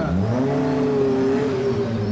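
Car engine revving as the car pulls away, rising quickly in pitch at first and then holding steady.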